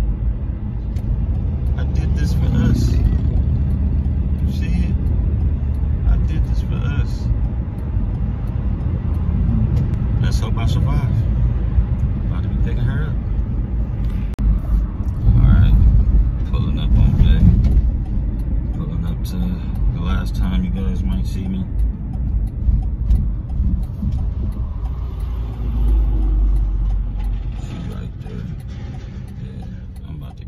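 Steady low rumble of road and engine noise inside a moving car's cabin, loudest around the middle and fading near the end.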